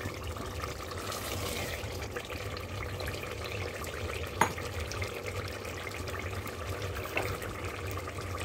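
Spiced tomato-and-yogurt masala gravy simmering in a steel pot, a steady bubbling sizzle, with one light tap about halfway through.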